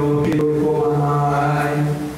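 A man's voice through a microphone and PA, chanting or singing a long, drawn-out note held almost level in pitch, with a brief break about a third of a second in, then stopping at the end.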